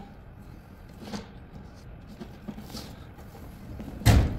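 Light rustling and scraping of a pleated media filter sliding along the metal tracks of a sheet-metal filter cabinet, with a few soft clicks. A louder knock comes right at the end.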